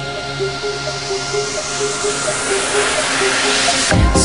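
Background electronic dance music in a build-up: held synth notes under a hissing noise sweep that rises and swells over the last two seconds, leading into the drop.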